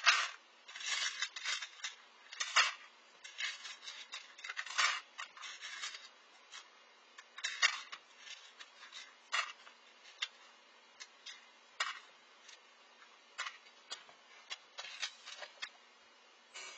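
Small pieces of fossilized stingray mouth parts clicking and clattering on a plastic tray as they are dropped and shuffled by hand. The clicks are irregular and sharp: busy through the first several seconds, then sparser, single ticks.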